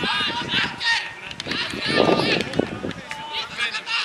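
People talking outdoors: speech that the recogniser did not write down, likely in Japanese.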